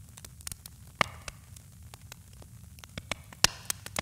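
Faint crackle and static over a low hum, with irregular clicks across the range and a few louder pops, about a second in and near the end. It is a record-noise texture left at the tail of the track, and it cuts off abruptly into silence at the very end.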